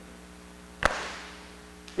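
A congregation's single unison clap: one sharp crack about a second in, with a short decaying tail of room echo, over a steady electrical hum.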